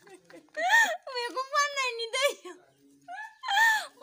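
A woman's high-pitched voice in several drawn-out, pitch-bending utterances, with a short pause about three seconds in.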